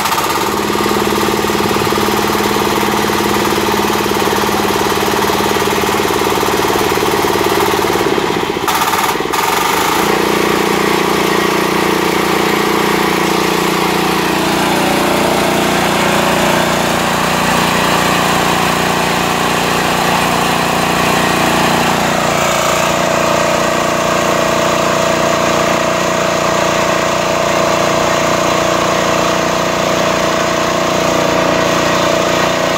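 Small engine driving a pineapple-leaf decorticator drum, running steadily just after being started, with no leaves being fed. Its note falters briefly about eight seconds in, then settles into a louder, lower hum, and shifts pitch again a little past the twenty-second mark.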